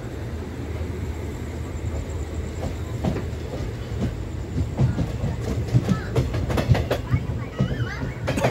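Passenger train coach rolling along the track, heard from its open doorway: a steady low rumble of wheels on rail. About halfway through, sharp clicks and knocks of the wheels over rail joints set in, growing louder toward the end.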